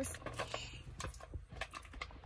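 Light, irregular clicks and taps from fingers handling a small cardboard blind box, over a low steady rumble.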